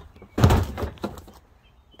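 A heavy plastic trash can knocked and shoved into place on concrete: one loud thud with a short scrape about half a second in, dying away within half a second.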